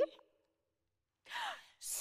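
A sung note cuts off, then after a second of near silence comes one short, breathy sigh that falls in pitch.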